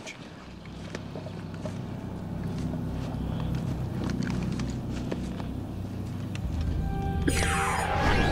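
Dramatic background music score: a low pulsing throb with held tones, slowly building in loudness. Near the end a shimmering swell of high tones with a falling sweep comes in.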